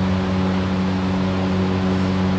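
A steady low mechanical hum, one pitch with overtones, unchanging throughout.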